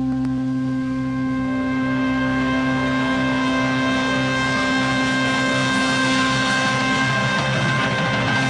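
Live 1970s rock band holding one long sustained chord, electric guitar and organ ringing steadily at the close of the guitar solo.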